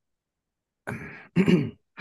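A man clearing his throat about a second in: a rough rasp followed by a short voiced 'hm'.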